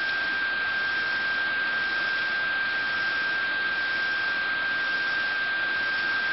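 Steady electrical hiss with a single constant high-pitched whine, unchanging throughout; nothing else stands out.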